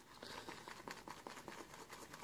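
Badger shaving brush whipping Proraso shaving cream into a thick lather in a ceramic bowl: a faint, fine crackling of many tiny clicks as the bristles work the foam. The lather is nearly done, with most of the air pockets worked out.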